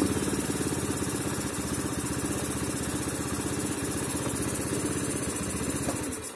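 Honda Beat's fuel-injected single-cylinder scooter engine idling unevenly, its air adjusting screw backed out too far: too much air enters through the bypass, so the idle cannot stay stable.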